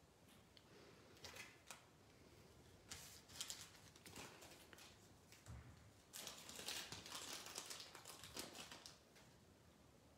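Faint rustling and light scraping of small paper and cardstock pieces being handled on a desk, in a few short spells with a longer one from about six to nine seconds in.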